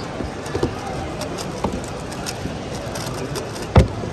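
A plastic 3x3 speed cube being turned fast, a stream of small clicks, against the steady chatter of a crowded hall. Just before the end comes one loud thump as the solved cube is put down on the table.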